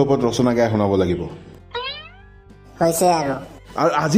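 Cartoon soundtrack of voice-like vocal sounds over music, with no clear words. Near the middle a short, steeply rising pitched glide sounds in a brief lull before the voices return.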